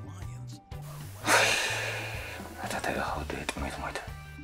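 A loud, breathy exhale about a second in, fading over a second, over background music with a steady low bass line.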